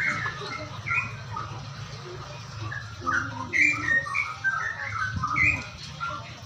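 Caged songbirds chirping and calling in many short notes, busiest and loudest in the second half, over a steady low hum.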